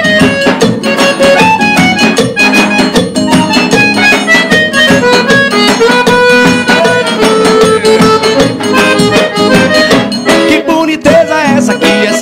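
Live forró band playing an instrumental break: accordion carrying the melody over strummed acoustic guitar and a steady zabumba and percussion beat.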